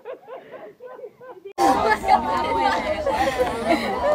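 Faint talking, then an abrupt cut about a second and a half in to louder overlapping chatter of several people, no words clear.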